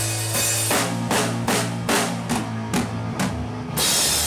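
Heavy rock band playing live, the drum kit up front: a run of evenly spaced drum strikes, about two or three a second, over held low guitar and bass notes, ending in a loud full-kit hit with cymbal crash.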